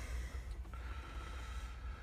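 Faint breathing close to the microphone over a low steady hum.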